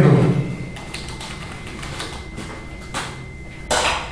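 Light taps and handling knocks at a table in a small room, with a short rustle near the end.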